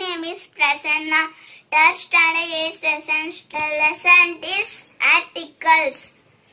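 A young boy singing in short phrases, with held notes and brief gaps between them.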